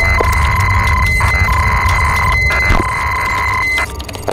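Electronic intro soundtrack: three long synthetic beeps of about a second each, separated by short gaps, over a steady low drone.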